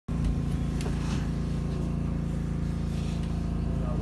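Electric commuter train running, heard from just behind the driver's cab: a steady low hum and rumble with a few faint clicks.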